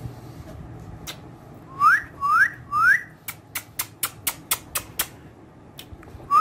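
Three short whistles, each sweeping quickly upward, a little under two seconds in, then a quick run of sharp clicks, about four a second.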